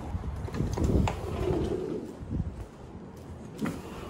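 Automatic sliding glass doors of a shop entrance opening as someone walks through, over steady low rumbling handling noise on a phone microphone, with a few knocks in the first second.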